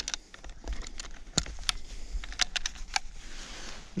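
Irregular plastic clicks and small knocks as a trail camera and its mounting strap buckle are handled and clipped onto a tree trunk.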